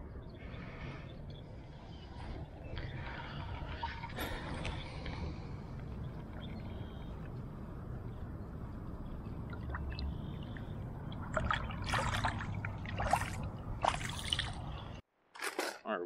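Water sloshing and trickling around a largemouth bass held in shallow pond water for release, with a burst of splashing near the end.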